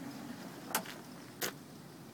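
Homemade metal slide track rolling as a portable refrigerator is pulled out on it: a low rumble of the rails, then two sharp clicks.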